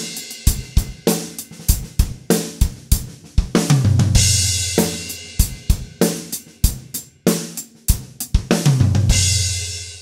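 Drum kit fill, played twice: a run of single strokes around the snare and toms that ends in two strong right-hand strokes on the floor tom, each time landing on a crash cymbal with a low drum that rings on.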